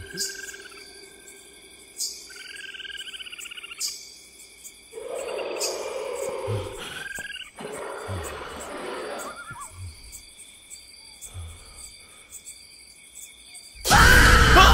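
Night ambience of crickets chirring steadily under a horror-film soundtrack, with a few sharp eerie sound-effect stings and soft low thuds at intervals in the second half.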